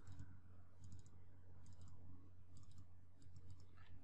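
Faint clicks of a computer mouse, in small clusters about once a second, as parts of a model are selected, over a low steady hum.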